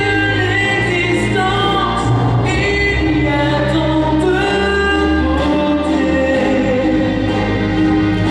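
A man singing live into a handheld microphone over instrumental accompaniment, his voice holding and gliding between long notes above sustained low bass notes that change every couple of seconds.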